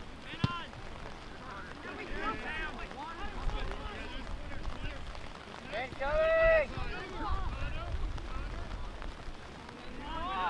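Players and onlookers shouting across an outdoor soccer field, with one loud, held shout about six seconds in over low wind rumble on the microphone. There is a single sharp knock just after the start.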